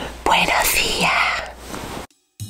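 A woman whispering close to the microphone: one breathy phrase of about a second.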